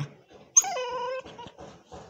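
A dog gives one short whine about half a second in, dropping in pitch and then holding steady.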